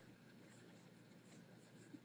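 Near silence: faint room tone in a pause between speech.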